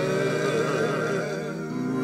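Male a cappella gospel quartet singing in close harmony: a steady low bass note holds underneath while the upper voices waver in pitch above it.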